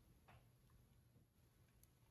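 Near silence: room tone, with one faint tick about a third of a second in.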